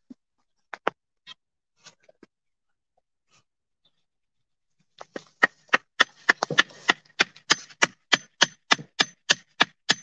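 A garden stake being driven into the soil with quick, even blows, about four a second, that start about halfway through and carry a slight ring. A few scattered knocks come first, as the stake is set in place.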